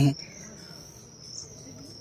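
Insects trilling in one steady, high-pitched note.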